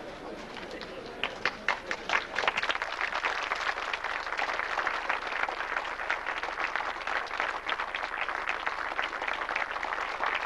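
A crowd applauding. A few separate claps come about a second in, then build quickly into steady, dense applause.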